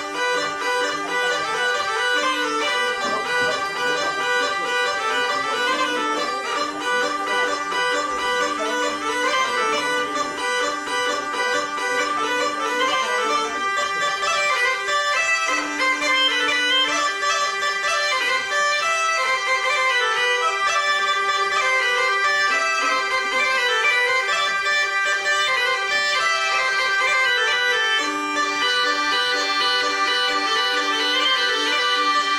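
Gascon bagpipe (boha) and hurdy-gurdy playing a tune together over a steady drone.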